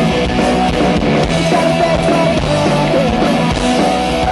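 Punk rock band playing live and loud: electric guitar, bass guitar and drum kit, steady throughout.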